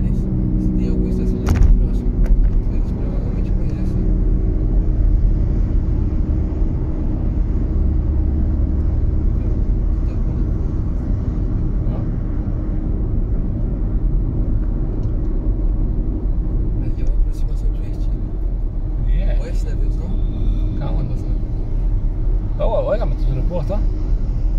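Steady road noise of a car cruising at motorway speed, a continuous low rumble of tyres and engine heard from inside the cabin.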